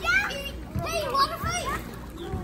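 Several children's high-pitched voices calling out and shouting over one another at play.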